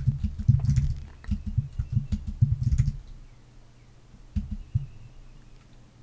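Computer keyboard typing: a quick run of keystrokes for about three seconds, then a few single key presses.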